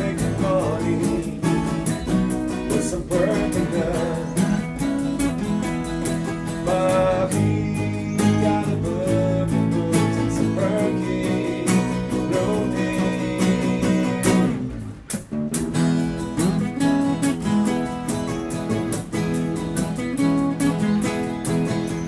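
Four acoustic guitars playing a blues instrumental passage together, strummed chords with picked notes over them, with a short pause about two-thirds of the way through.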